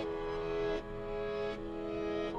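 Slow, dark piano melody from the LABS Soft Piano plugin layered over a reversed, stretched, reverbed piano melody, playing back as held notes that change about every three-quarters of a second.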